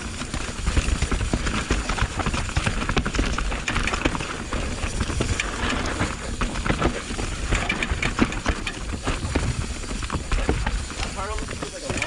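Mountain bike riding down a rough, rocky and rooty trail: a fast, irregular run of knocks and rattles from the bike over the rough ground, with low wind rumble on the camera's microphone.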